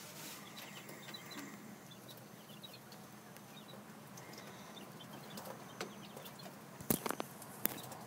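Quail giving faint, scattered high chirps, with a few sharp knocks about seven seconds in.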